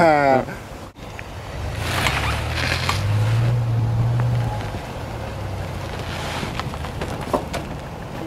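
Chevrolet sedan's engine revving under load as the car is driven up onto a flatbed trailer, the hum rising to its loudest about three to four seconds in and easing off by about five seconds. A laugh at the very start.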